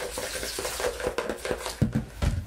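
Glue and blue dye being stirred quickly in a mixing bowl: a fast run of small scrapes and taps. Near the end come a couple of low thumps as the bowl is set down on the table.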